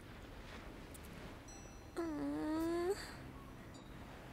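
A woman's brief wordless vocal sound, held for about a second near the middle, with a slightly rising pitch, over a faint steady background hiss.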